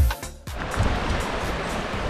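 Background music with a beat cuts off at the very start. It gives way to the steady rush of a fast-flowing, rain-swollen stream tumbling over rocks.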